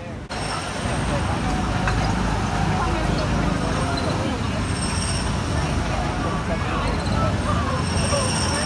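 Steady din of small ride-car engines running on the Autopia track, with crowd chatter mixed in.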